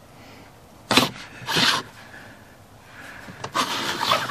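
Louvered overhead cabinet doors in a camper van being handled: a sharp knock about a second in, a short rushing noise just after, and a few clicks and rubbing sounds near the end.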